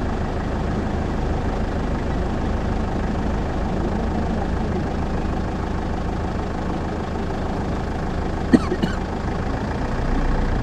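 Vehicle engine idling steadily with a low rumble. Two short, sharp sounds stand out near the end.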